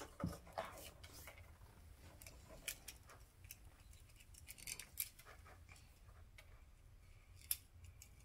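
Shell of a Hatchimals toy egg being cracked and picked off by hand: faint, scattered small clicks and crackles, with a sharper snap near the end.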